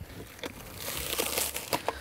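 Packaging crinkling and rustling as a new car radio is unwrapped from its box, building up about half a second in and fading near the end.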